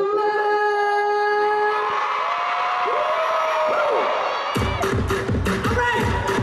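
Live pop concert music: a long held note, sung into a microphone, then sliding notes, over crowd noise. A heavy drum beat kicks in about four and a half seconds in.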